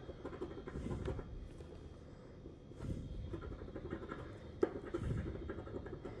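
A coin scraping the scratch-off coating from a lottery ticket, a faint rough scratching that comes and goes in uneven strokes, with one sharp tick about four and a half seconds in.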